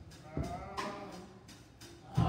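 A quiet stretch of church band music. A drum kit gives a low thump about half a second in and a few light cymbal strokes, under faint wavering voices.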